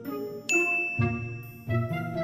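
A bright chime sound effect rings out about half a second in, a single high tone that hangs on for most of a second, over light background music.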